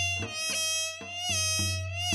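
Korean traditional ensemble playing dance accompaniment: a held, nasal melody note that dips in pitch and wavers with vibrato, over a steady pattern of drum strokes.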